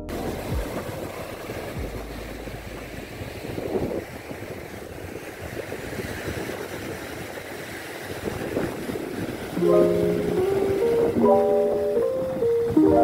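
Small waves washing onto a sandy, coral-strewn beach, a rough swelling and ebbing rush with wind on the microphone. About ten seconds in, gentle background piano music comes in over it.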